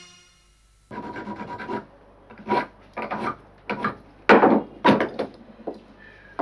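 A key being filed by hand at a locksmith's bench. One longer scrape is followed by about eight separate rasping strokes, unevenly spaced.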